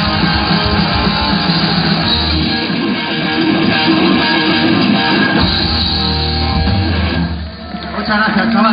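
Live rock band playing loud electric guitars, bass and drums through a PA, heard across an open-air venue; the playing drops away shortly before the end.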